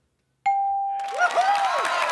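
Game-show score-reveal ding: one bell-like tone that starts suddenly about half a second in and fades out. The studio audience and contestants break into whoops and cheering just after it.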